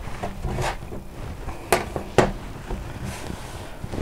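A few sharp metallic clicks and knocks of a steel ruler and knife against a stainless steel worktop while puff pastry edges are trimmed. The two loudest clicks come about halfway through, half a second apart.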